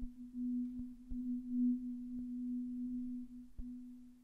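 Marimba rolled softly on a single low note with Vic Firth Virtuoso yarn mallets, giving one sustained, gently pulsing tone that swells a little in the middle and fades near the end.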